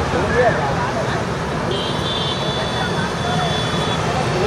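Busy street ambience at night: motorbikes and scooters running past under a constant noise of crowd chatter. A steady high-pitched tone comes in a little before halfway and holds to the end.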